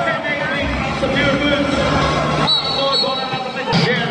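Crowd noise and voices echoing in a large indoor hall during a basketball game, with a couple of sharp knocks from the ball on the court.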